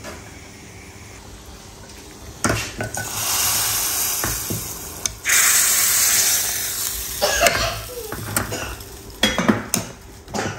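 A hot tadka (tempering of oil, garlic, cumin and red chilli powder) sizzling, with a sudden loud sizzle about five seconds in as it is poured from a small tempering pan into a steel pot of spinach dal, lasting about two seconds. Then a steel ladle clinks against the pot several times as the dal is stirred.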